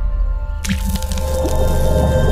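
Logo intro music with steady bass and sustained tones, and a sudden sound effect about two-thirds of a second in that fills the high end and carries on.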